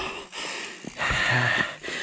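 A man breathing hard and heavily, two long, loud breaths about a second apart, out of breath from hard riding and climbing.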